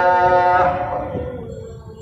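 A voice in melodic Quranic recitation holds a long note that ends about half a second in. A softer, slightly falling tone follows and fades away.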